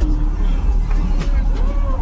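Heavy low bass rumble from a high-power car audio subwoofer system, steady and loud, with voices over it.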